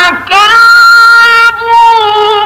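Quran recitation: a single very high voice starts suddenly and holds one long, steady chanted note, with a short break about a second and a half in before it carries on.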